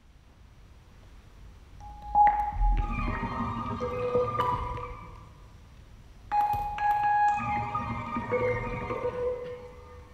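Contemporary music for double bass and electronics: a bowed double bass mixed with steady electronic tones through loudspeakers. A low swell gives way to two sudden loud attacks, about two and six seconds in, each leaving several held tones that slowly fade.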